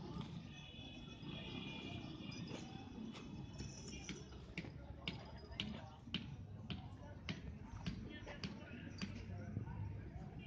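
Indistinct background voices, with sharp clicks at an even pace of about two a second through the second half.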